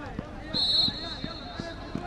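A shrill whistle blast about half a second in, the loudest sound, over men's voices shouting and a run of dull thumps about three a second.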